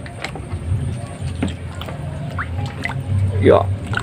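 Water splashing and sloshing in a plastic tub as an otter lunges after live fish, with scattered small splashes and knocks against the tub.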